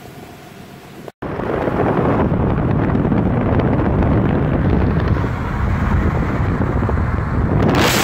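Quiet outdoor ambience that cuts off about a second in, replaced by loud wind rushing over the microphone and road noise of a moving car, which turns hissier near the end.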